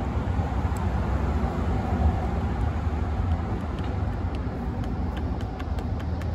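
Steady low outdoor rumble, like traffic or wind on the microphone, with a few faint clicks in the second half.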